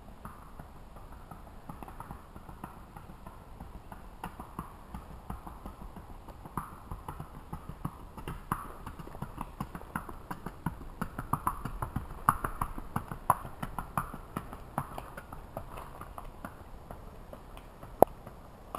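Hoofbeats of a Missouri Fox Trotter filly gaiting on a paved road: a quick, rhythmic clip-clop that grows louder as she comes close, is loudest about two-thirds of the way through, then fades as she moves away.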